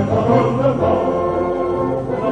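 Male opera chorus of soldiers singing with orchestral accompaniment, many voices holding sustained chords.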